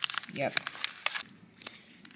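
Foil food sachet crinkling as it is squeezed and emptied, a quick run of small crackles that thins out after about a second.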